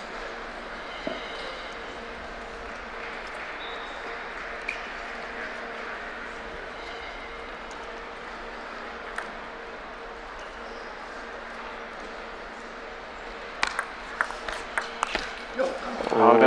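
A table tennis rally: a quick run of sharp clicks of the ball striking paddles and table, loudest in the last two or three seconds. Before it, a few single ball taps over a steady hall murmur with a low hum.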